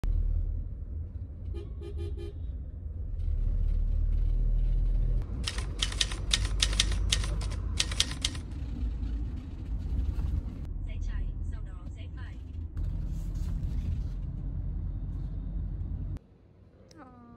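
Steady low rumble of a car cabin riding through traffic. About two seconds in, a vehicle horn sounds in a short burst of toots. A run of quick clicks, about three or four a second, comes in the middle.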